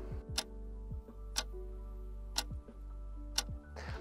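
Quiet background music with a sharp tick once a second, like a clock ticking.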